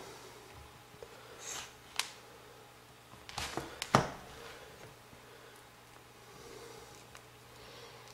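Alligator clip leads being handled and clipped onto a small computer cooling fan's wires, giving a few short sharp clicks, the loudest about four seconds in, over a faint steady hum.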